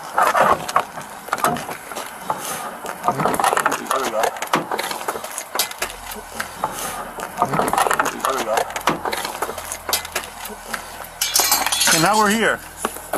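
Indistinct voices talking, with scattered clicks and knocks of a minivan door being opened and handled just after its lock was forced with a lockout tool.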